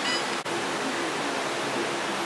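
Steady hiss of room noise with faint tones underneath and a brief dropout about half a second in.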